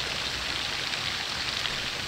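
Steady splashing hiss of a pond fountain's water jet falling back onto the water.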